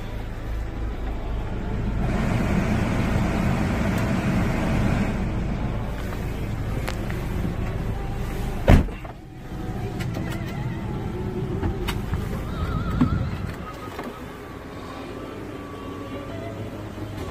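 Vehicle running and moving slowly, heard from inside the cabin as a steady low rumble, with one sharp, loud knock about nine seconds in.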